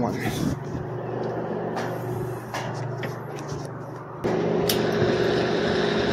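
Dixie Narco 501E vending machine's vend motor switching on abruptly about four seconds in and running with a steady hum during a diagnostic motor test of motor one. Before it starts there are a few light clicks over a low background hum.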